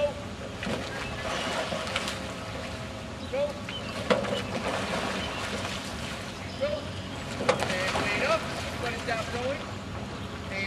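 Outdoor water-side ambience with scattered, indistinct voices of people in a rowing barge and wind on the microphone, broken by a few sharp knocks, about two, four and seven and a half seconds in, as oars are handled in their oarlocks.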